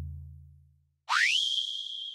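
Edited-in sound effects: a deep boom fades away over the first half-second. About a second in, a tone slides quickly upward and holds as a steady high whistle.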